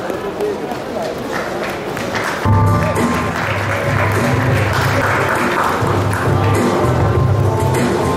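Audience applause, then background music with a steady bass line comes in about two and a half seconds in and plays over the clapping and voices.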